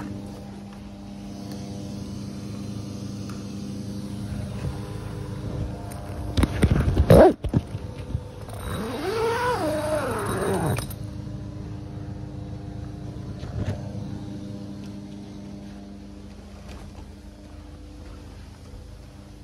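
Steady hum of running carpet-cleaning equipment, with a loud clatter about six seconds in. Then comes one drawn-out yowl, rising then falling, like a cat's, lasting about two seconds.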